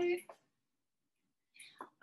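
Speech only: a woman's voice finishing a phrase at the start and speaking softly again near the end, with about a second of dead silence between.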